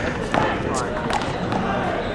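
Small rubber handball bouncing a few times on a concrete court, sharp slaps, with people talking nearby.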